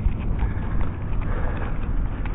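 Footsteps on asphalt pavement, a run of light steps while walking along, with wind rumbling on the microphone.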